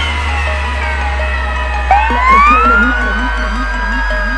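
Electronic emergency-vehicle siren: a falling wail dies away, then about halfway through it starts again with a click and rises quickly to a steady high tone. Electronic dance music with a steady bass plays underneath.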